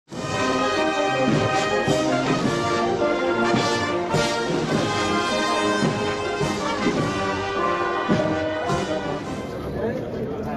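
Brass band music with held, sustained chords, starting abruptly at the very beginning.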